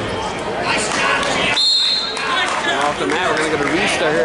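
Spectators and coaches shouting across a gym during a youth wrestling match, the voices echoing in the hall. A short, high, steady whistle blast comes about a second and a half in.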